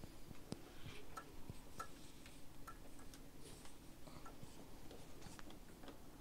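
Faint, irregular light clicks and ticks from tweezers and fingers working around the needle and presser foot of a cover stitch machine while the needle thread is pulled out.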